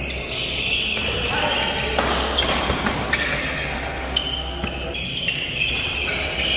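Badminton doubles rally: the shuttlecock is struck sharply by rackets several times in quick succession, over the voices of spectators in the hall.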